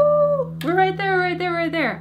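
A steel-strung acoustic guitar string rings on steadily under a woman's wordless humming. The humming comes briefly at the start and again from just over half a second in, falling away near the end, while the freshly fitted strings are being tuned.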